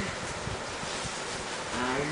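A person's voice holding one long, low, wordless note, like a moo, starting near the end after a short rise in pitch. Before it there is only steady background hiss.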